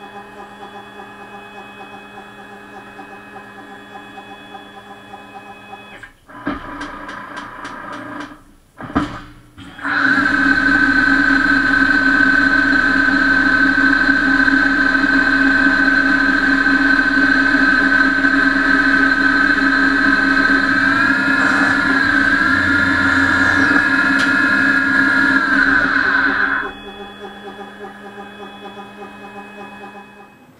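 Tormach 15L Slant-PRO CNC lathe running a test cut on aluminum. A steady machine hum is followed by a quick run of clicks and a knock. Then the spindle runs up to a loud, steady whine for about sixteen seconds, wavering briefly in pitch, before it stops and the lower hum returns.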